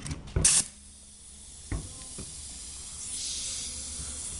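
Compressed air line being connected to a pneumatic bottle-capping tool. There is a short sharp burst of air about half a second in as the coupling goes on, a click, then a steady hiss of air that grows louder from about three seconds in.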